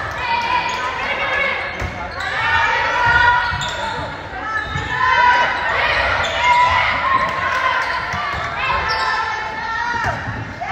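Sneakers squeaking on a gym's hardwood court during a volleyball rally: many short, high squeals that rise and fall, with players' and spectators' voices, all echoing in the large hall.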